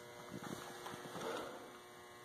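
Faint steady electrical hum over quiet room tone, with a couple of soft ticks.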